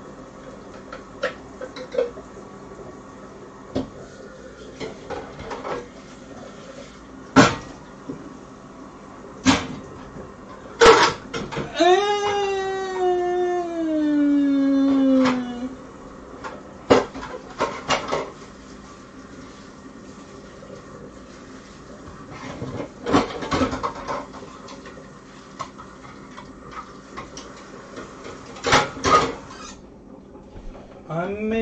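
Kitchen clatter: scattered clinks and knocks of dishes, pots and utensils being handled. About twelve seconds in, a long pitched whine slides slowly downward for about three seconds.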